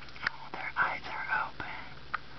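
A woman whispering softly for about a second, too low to make out words, with a few short sharp clicks around it.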